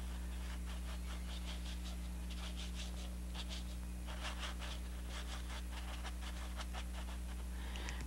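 Paintbrush scrubbing oil paint onto canvas in quick, repeated short strokes that come in several runs. A steady low electrical hum runs underneath.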